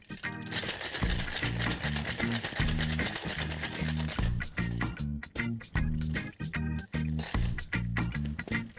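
Ice shaken hard in a Boston shaker (steel tin over a mixing glass), a dense rattle from about half a second in until about four seconds in, done vigorously to foam the drink. Background music with a repeating bass line plays throughout.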